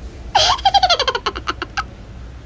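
A burst of high-pitched giggling laughter: one sharp high note, then a quick run of short breathy pulses falling in pitch that trails off after about a second and a half.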